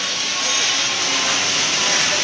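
Steady rushing noise of passing road traffic.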